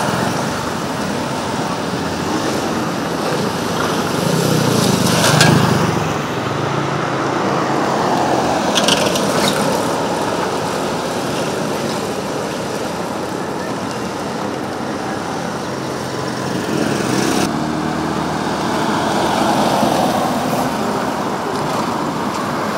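Road traffic passing on a street: cars and motorcycles driving by, with one vehicle going past close and loudest about five seconds in.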